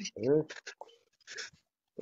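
A man's voice in short, broken fragments of speech: a single voiced syllable, then a few hissing consonant sounds and brief syllables with pauses between them.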